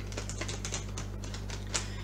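Tarot cards being shuffled by hand: a rapid, irregular run of light clicks as the cards slap together.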